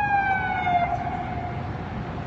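Emergency vehicle siren: one slow, falling wail that fades out near the end.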